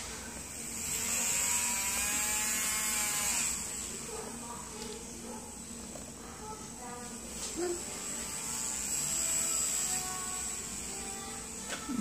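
Electric nail drill handpiece running at maximum speed: a steady, very, very quiet high whine that swells somewhat louder for a couple of seconds about a second in.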